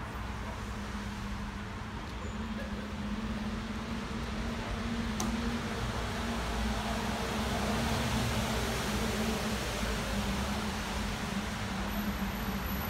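Steady city traffic noise with a constant low hum underneath, swelling a little in the middle and easing near the end.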